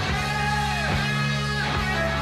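Live rock music: a Fender Stratocaster electric guitar plays long held notes that bend slowly up and back down, over held bass notes.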